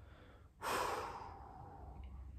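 A man's sudden forceful breath out, starting about half a second in and fading over about a second. His nose is irritated: he says he must have inhaled some dust.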